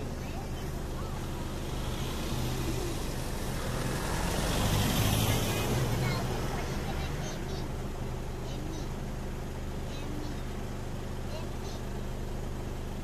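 Vehicle engines idling steadily, with a broad swell of noise about halfway through and faint voices.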